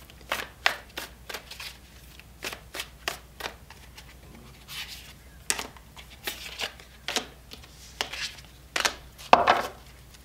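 A deck of oracle cards shuffled by hand, overhand style: a run of short card snaps and slaps, a few each second at an uneven pace, with a louder slap near the end.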